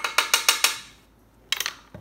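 A metal spoon tapped rapidly against the rim of the Instant Pot's inner pot to knock off minced garlic: a quick run of about seven sharp taps, then a shorter cluster about one and a half seconds in.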